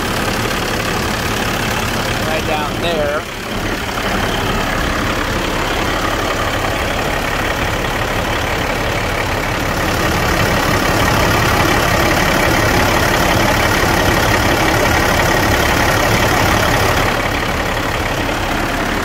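Caterpillar C12 inline-six diesel engine idling steadily, heard up close, a little louder from about ten seconds in until near the end. It runs smoothly with little blow-by, which the owner takes as a healthy engine with good oil pressure.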